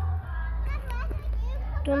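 Children's voices and chatter, with short high voice sounds about a second in and again near the end, over a steady low rumble.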